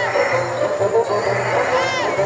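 Show soundtrack music playing through outdoor speakers, with a short rising-and-falling sound effect at the start and another near the end.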